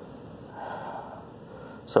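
A person's soft breath, about half a second in and lasting under a second, over faint background hiss; no beep from the voltage detector.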